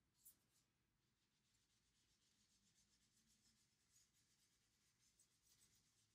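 Very faint rubbing of an eraser on a small dry-erase board, in repeated short strokes, with a soft knock just after the start.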